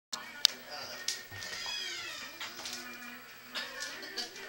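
Television sound with speech and background music coming from the set, and a short falling high-pitched cry about one and a half seconds in. A sharp click comes about half a second in.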